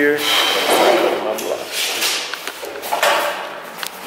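Wooden 2x6 boards being handled and set on a miter saw stand: irregular wood-on-wood knocks and scraping, with no saw running.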